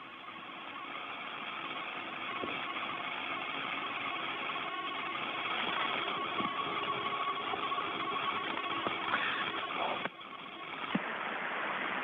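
Static hiss from an open space-to-ground radio link, with a faint steady whine running through it; it fades in over the first couple of seconds and drops out briefly about ten seconds in.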